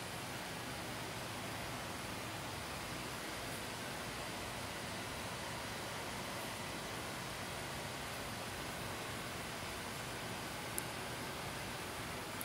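Steady, even hiss of background noise with no distinct events, apart from one faint click near the end.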